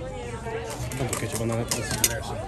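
Indistinct voices and chatter with a few light clicks.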